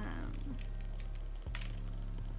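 Small sharp plastic clicks and taps as rhinestone- and bead-covered pacifiers are handled, with a louder click about one and a half seconds in. A steady low hum lies underneath.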